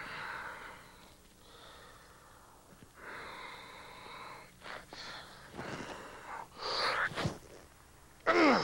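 A man's heavy, straining breaths and grunts in several separate bursts, the effort of lifting a stack of iron weight plates with one finger.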